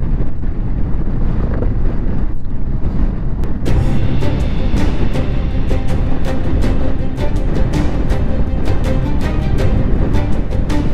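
Wind rushing over the microphone of a moving motorcycle, then background music with a steady beat comes in about four seconds in and carries on over the wind.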